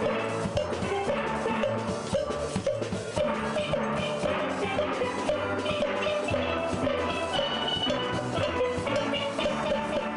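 Youth steel band playing: many steel pans struck with rubber-tipped sticks in quick runs of ringing, pitched notes, with drums keeping the beat underneath.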